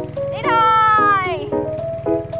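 A cat's meow, one long call that rises quickly and then slowly falls, laid over light background music of short plucked notes.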